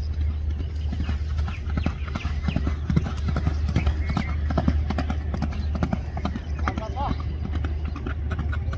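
Hoofbeats of a ridden racehorse galloping on a dirt track: a quick run of dull thuds, loudest about halfway through as the horse passes close, over a steady low rumble.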